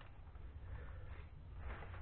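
Quiet background: a faint low rumble and hiss with no distinct event.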